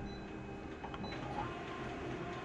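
Office colour multifunction copier running with a steady hum and a few faint clicks as it begins printing a copy job.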